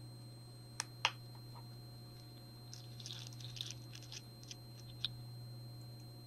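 Faint handling sounds of a carded pair of earrings being moved in the hand: two light clicks about a second in, soft rustling in the middle and one more click near the end, over a steady low hum.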